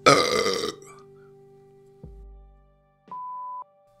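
A person's loud burp lasting under a second, then a soft thump about two seconds in and a short, steady electronic beep near the end.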